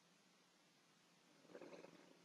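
Near silence: faint room tone, with one brief faint sound about three-quarters of the way through.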